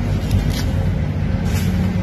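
An engine running steadily, a low hum under everything, with two brief crackles about half a second and a second and a half in as radish leaves are snapped off.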